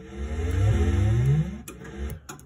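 Gottlieb Caveman pinball sound board playing test sound 21: a synthesized effect of low rising pitch sweeps, two in a row, fading out near the end.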